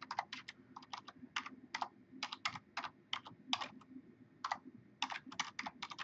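Computer keyboard typing: single keystrokes in uneven runs, about four a second, with a short pause near two-thirds of the way through.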